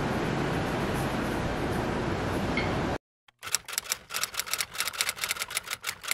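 A steady hiss of room noise for about three seconds, cut off suddenly. After a brief silence comes a fast run of typewriter key clicks, about six or seven a second.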